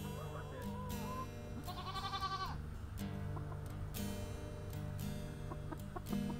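Acoustic guitar music, with barnyard animal calls over it: a few short, wavering calls in the first second, then a goat's quavering bleat about two seconds in.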